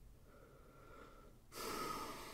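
A person breathing close to the microphone: a faint breath, then a sudden louder, hissing breath out about one and a half seconds in that trails off.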